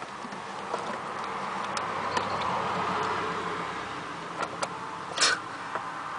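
Light metallic clicks from a bolt and a fuel pressure regulator being handled against a steel mounting bracket, with a short louder scrape about five seconds in. Behind them a steady vehicle-like hum swells and fades over several seconds, like a car passing.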